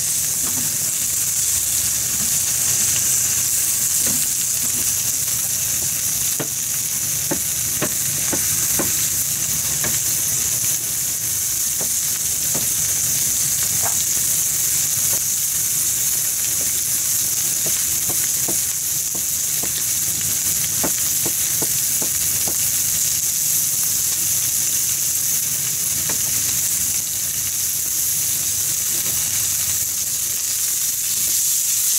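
Fatty pork slices sizzling steadily in a frying pan, a constant high hiss as the fat renders out, with scattered small pops and crackles of spitting fat.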